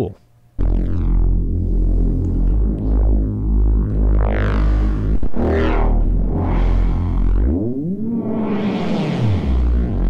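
Synthesized neurofunk bass patch built in Bitwig's Poly Grid playing: a deep sustained bass note with a randomly modulated low-pass filter sweeping open and shut over and over, with added drive distortion and reverb that is a little much. It starts about half a second in, and near the end the pitch bends up and back down.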